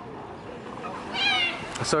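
A short, high-pitched, wavering animal cry a little over a second in, heard over faint background.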